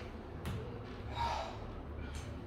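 A man's hard, breathy gasp after straining in an arm-wrestling pull, with a short sharp click about half a second in.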